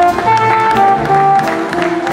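Traditional jazz band playing live, with a trombone playing a melodic line over the rhythm section.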